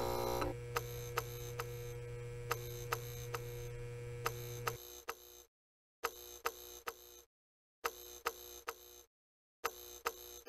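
Sound effects of an animated neon end screen. A switch clicks at the start, then a low, steady electrical hum runs under a fast series of sharp ticks, about two or three a second. The hum cuts off about five seconds in, and the ticks go on in short runs with brief silences between them.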